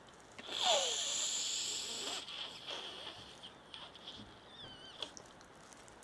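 A sniff through a plastic straw held to the nostril, starting about half a second in and lasting about a second and a half; then faint rustling and small clicks of a plastic bag being handled.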